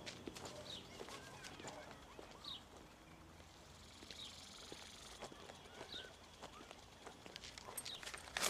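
Faint outdoor ambience: a small bird chirping briefly every second or two, with light footsteps.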